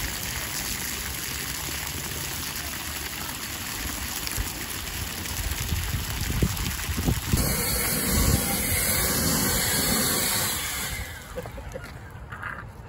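Aerosol spray-paint can hissing steadily as paint is sprayed onto a wooden pole. The hiss gets brighter about seven seconds in and stops shortly before the end.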